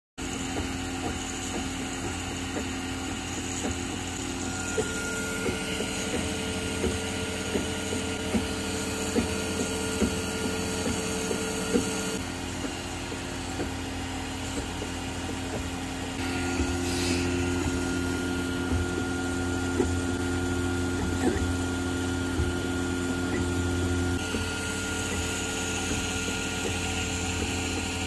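Original Prusa i3 3D printer running a print: its stepper motors sing in steady tones that change pitch every few seconds as the print head moves, over a steady hiss, with light ticks.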